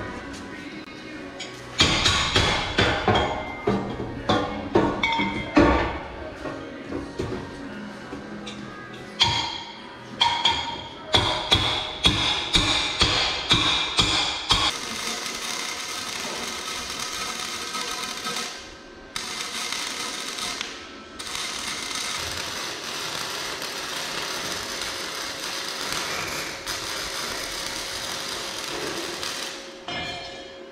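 A run of sharp, ringing knocks for the first half, then a wire-feed welder's arc sizzling steadily as a joint in the steel tubing is welded. The arc breaks off briefly twice in the second half.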